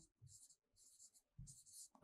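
Faint strokes of a pen writing on a board, in three short scratchy bursts.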